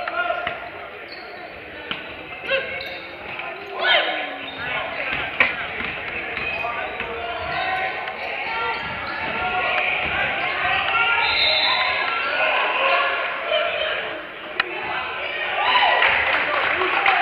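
A basketball bouncing on a hardwood gym floor, with several sharp thuds, the loudest about five seconds in. Players' and spectators' voices carry on throughout, echoing in a large gym.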